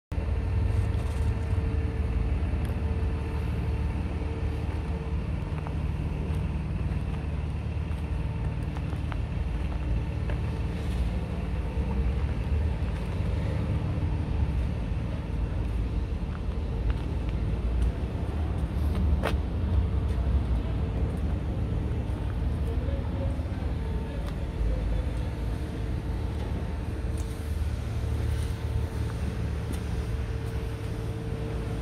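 A steady low rumble of a running vehicle engine, with a faint steady hum and a single sharp click about two-thirds of the way through.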